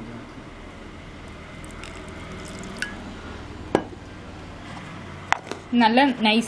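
Water poured into a steel mixer-grinder jar of cashews, green chilli and curry leaves, followed by a sharp knock about two thirds of the way through and a click or two near the end as the jar and its plastic lid are handled.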